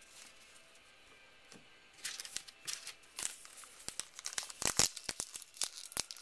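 A paper baseball card pack wrapper being torn open by hand. Quick bursts of crinkling and tearing paper start about two seconds in, after a quiet stretch.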